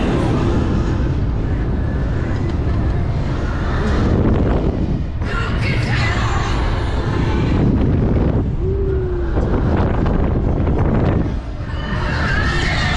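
Wind rushing and buffeting over a ride-mounted microphone as the KMG Speed thrill ride's arm swings and spins at full speed, a loud, steady rumble.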